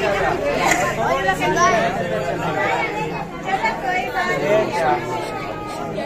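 Several people talking at once in lively, overlapping chatter.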